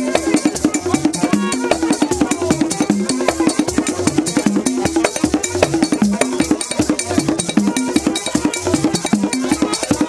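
Haitian Vodou drumming: fast, dense hand-drum and percussion strokes in a steady repeating rhythm for dancing.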